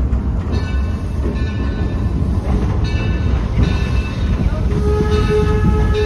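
Rumble of a passenger car riding behind the 1873 Mason 0-6-4T steam locomotive Torch Lake. A steady steam whistle starts sounding about five seconds in.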